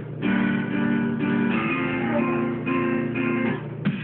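Music with strummed guitar: a few sustained chords that change about every second, starting just after the beginning and stopping shortly before the end.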